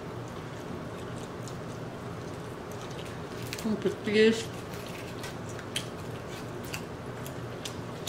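A person eating fried chicken: scattered small clicks and smacks of chewing and handling the food, with a short voiced murmur about four seconds in, over a steady low hum.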